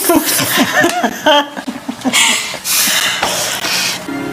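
People laughing and giggling in short, quick bursts, turning breathy in the second half.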